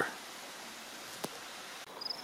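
Quiet outdoor ambience: a steady, even hiss with no distinct source, and one faint click about a second and a quarter in.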